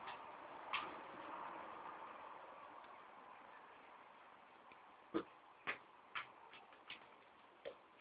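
Soccer ball being kicked: sharp single taps, one about a second in and then a run of them about two a second in the second half, over a faint hiss that fades away.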